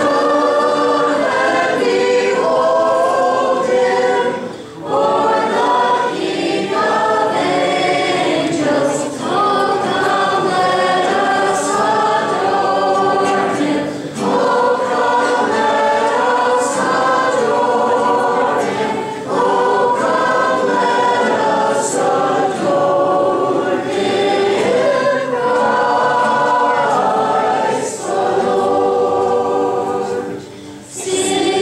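A small group of girls singing a Christmas carol with two acoustic guitars strumming along, the singing pausing briefly between phrases every few seconds.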